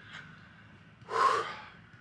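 A man's single sharp breath close to the microphone, about a second in, lasting about half a second and fading away.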